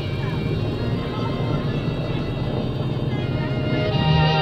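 Douglas C-47 Dakota's radial engine running close by, a rough, rapidly pulsing low noise that slowly grows louder. Music plays faintly under it.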